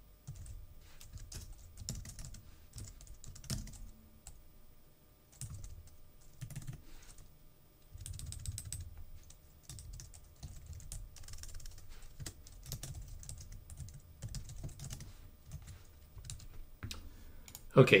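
Typing on a computer keyboard: runs of quick keystrokes broken by brief pauses.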